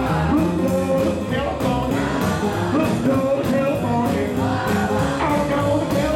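Live swing band playing with double bass and drums keeping a steady, brisk beat, and a voice singing over it.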